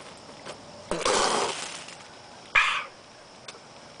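A man's two harsh, breathy exhales after swallowing a swig of strong corn liquor: a longer one about a second in and a short one near the middle.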